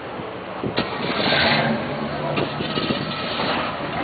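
A car engine idling steadily, with a short hiss about a second in.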